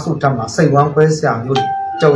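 A man talking, with a short steady electronic tone, like a beep or chime, coming in about one and a half seconds in and lasting about half a second under his voice.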